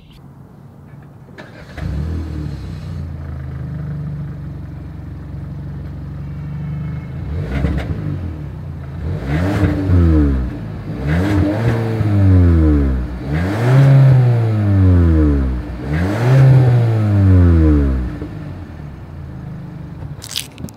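2021 Hyundai Sonata Limited's 1.6-litre turbocharged four-cylinder heard at the exhaust, starting up about a second and a half in and idling steadily. Near the middle it is blipped once, then revved four times, each rise and fall about two seconds long, before it drops back to idle.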